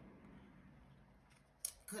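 Near silence with faint room tone, then a few short sharp clicks near the end, just before talking resumes.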